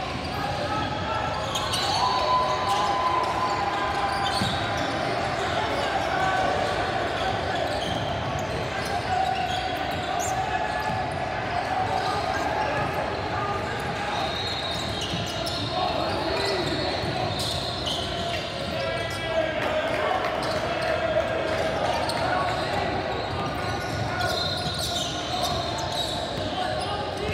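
A basketball being dribbled and bounced on a hardwood gym floor during play, with indistinct voices of players and spectators echoing in the hall.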